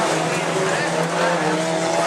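Several stock-class autocross cars racing on a dirt track, their engines running hard at high revs, several pitches overlapping and wavering up and down.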